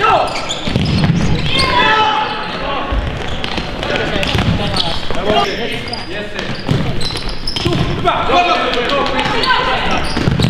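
Indoor futsal play in a sports hall: players calling out to each other, with the sharp knocks of the ball being kicked and bouncing on the hard court floor.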